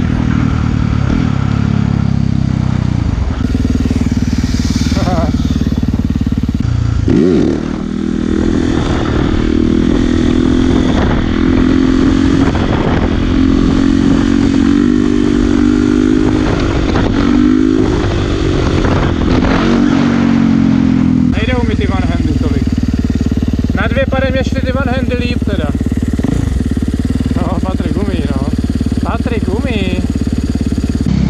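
Supermoto motorcycle engine running at steady throttle while the bike is ridden in a wheelie, its pitch held with slight wavering. Revs drop briefly about seven seconds in, and the engine sound changes about twenty-one seconds in.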